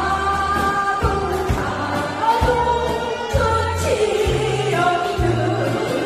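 A woman singing a slow Korean song into a handheld microphone over a backing track with a steady beat and bass.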